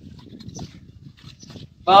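Faint, scattered scraping and tapping of a mason's trowel working mortar on a brick wall.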